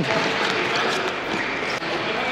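Wheelchair-rugby chair rolling across a hardwood gym floor, a steady rolling noise, with the ball bounced on the floor as it is dribbled.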